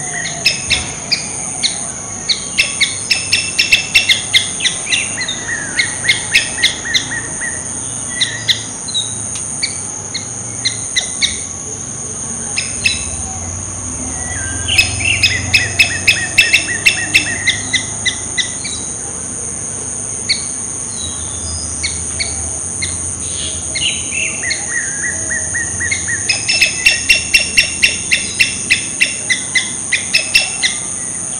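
Small songbird calling in bouts of rapid repeated chirps, about three or four a second, each bout lasting a few seconds, with three main bouts. A steady high-pitched insect drone runs underneath.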